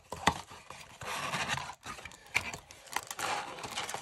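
Cardboard trading-card blaster box being opened by hand. A sharp click as the flap comes free, then two stretches of scraping and rustling as the packs slide out of the box.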